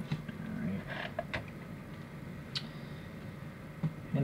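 A few light, sharp clicks and taps of hard-plastic action figures being handled and set down on a display base.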